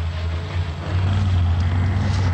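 Sawmill machinery running: a steady low drone that grows louder about halfway through.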